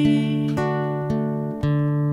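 Acoustic guitar playing a fingerpicked fill: single notes plucked about every half second, ringing over a held bass note.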